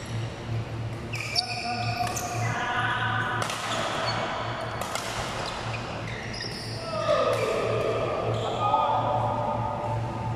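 Badminton rally in a sports hall: rackets striking the shuttlecock in quick sharp hits, and sneakers squeaking on the court floor, all over a steady low hum.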